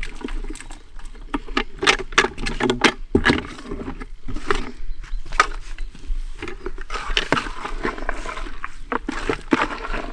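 Tiger nuts and boilies, whole and crushed, poured from one bucket into another and stirred with a baiting spoon. It makes a busy, uneven rattle of many small clicks and scrapes.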